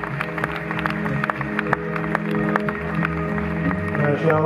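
Live funk band playing: held keyboard chords over bass guitar and a steady drum beat.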